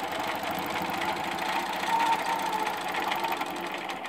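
Innova longarm quilting machine stitching at a steady pace: a fast, even needle rhythm as it sews a straight line.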